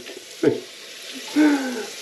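Tap water running into a sink in a steady hiss, with a man's short laugh about half a second in and a brief voiced sound in the second half.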